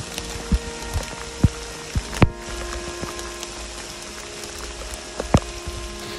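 Heavy rain pouring down on the hikers' rain gear: a steady hiss broken by several sharp taps of drops, the loudest a little over two seconds in. Soft, sustained background music lies under it.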